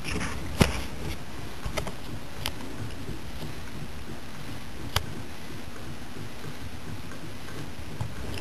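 Homemade HHO electrolysis cell running and producing gas: a steady fizzing hiss, broken by a few sharp clicks, the loudest about half a second in and another about five seconds in.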